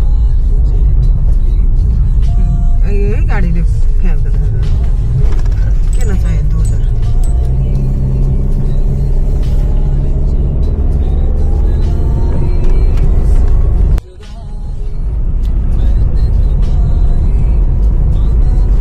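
Inside a moving Toyota car: the engine and road noise make a steady, loud low rumble. The engine note rises slowly in pitch from about eight seconds in. About fourteen seconds in the sound cuts out abruptly, then swells back over a couple of seconds.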